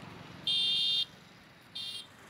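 Two loud, high-pitched steady beeps. The first starts about half a second in and lasts about half a second; a shorter one comes near the end.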